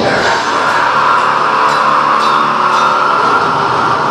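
Metal band playing live at full volume: a dense wall of distorted guitar and bass with a harsh vocal over it. The sound holds one sustained, unbroken mass.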